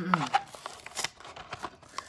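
Cardboard-backed plastic blister pack of a small toy engine being handled and pulled open: scattered sharp clicks and crackles with light rustling, the loudest about a second in.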